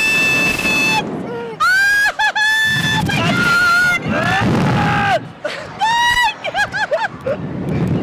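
Two riders screaming as a slingshot ride launches them upward: a series of long, high screams with short breaks, over the rush of wind on the microphone.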